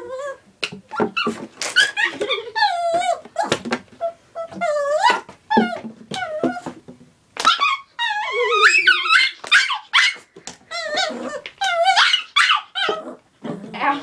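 Small dog whining and yipping in a run of wavering, high-pitched cries, upset by a plastic water bottle it is afraid of.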